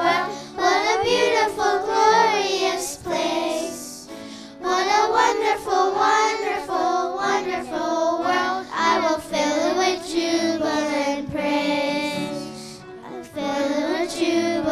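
A children's choir of young girls singing together into handheld microphones, the song moving in phrases with two short breaks between them.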